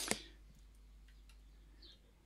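A few faint, sharp computer mouse clicks in a quiet room. A short high bird chirp sounds right at the start.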